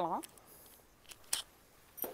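A few brief, sharp rustles in a quiet room, the clearest about a second and a half in, and a light click at the end.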